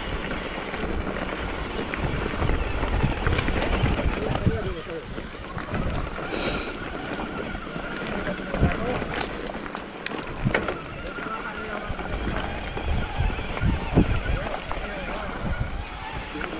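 Mountain bike ridden over a rocky gravel trail: tyres crunching on loose stones, with frequent sharp rattles and knocks from the bike over bumps, over a steady rush of noise.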